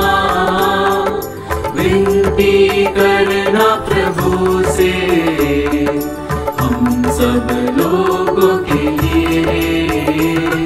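Hindi Christian devotional song in praise of Saint Clare playing, a melodic line over a steady beat.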